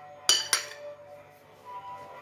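Steel spoon clinking twice against a glass dish in quick succession, the glass ringing on briefly afterwards.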